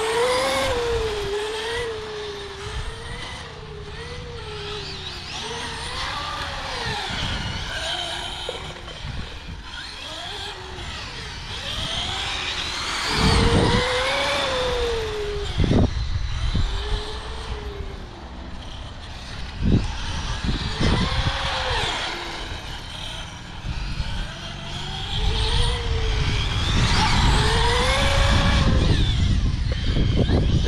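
Radio-controlled cars' motors whining as they lap a course, the pitch rising and falling again and again as they accelerate and brake. A low rumble sits underneath, with a few sharp jolts.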